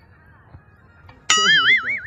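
Faint background, then about two-thirds of the way in a sudden loud ringing tone whose pitch wobbles quickly up and down, about six times a second.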